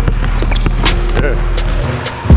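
A basketball dribbled on a hardwood gym floor, with short high squeaks of sneakers on the wood as the player cuts and gathers for a shot.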